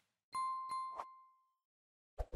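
Subscribe-button animation sound effect: three quick mouse-click ticks about a third of a second apart, with a bright bell-like ding ringing over them and fading away within about a second.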